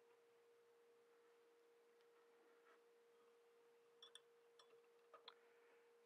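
Near silence: room tone with a faint steady hum and a few faint small clicks in the last two seconds.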